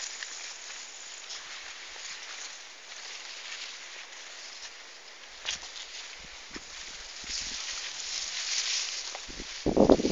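Steady outdoor hiss with light rustling of leafy plants and a few small clicks, swelling brighter late on, then a short loud rustle or bump just before the end.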